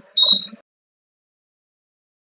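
A brief garbled, voice-like fragment lasting about half a second, with a thin high whistle running through it, then cuts off to dead silence.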